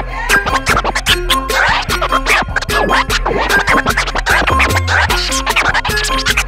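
Vinyl scratching on a turntable over a hip-hop beat: the record is pushed back and forth by hand and cut in and out at the mixer, giving quick rising and falling scratch sweeps on top of a steady drum pattern.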